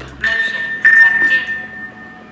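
Electronic ping from a phone's radar-style tracker app: a high steady beep sounds about a quarter second in and again, louder, just under a second in, then rings away.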